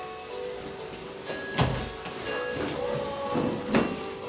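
A large cloth sheet being shaken out and flapped open over a massage table: two short, sharp swishes of fabric, about one and a half seconds in and again near the end, over quiet background music.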